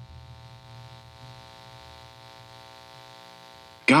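A steady electrical buzz with a lower drone beneath it, holding at an even level, then cutting off just before a voice begins.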